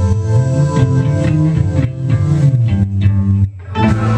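Live rock band playing the last bars of a song: electric guitar and bass guitar phrases through effects, a brief break about three and a half seconds in, then a held chord.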